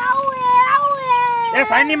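A woman's long, drawn-out wail held on one pitch, sagging slowly, which gives way to quick, excited talk in the last half second.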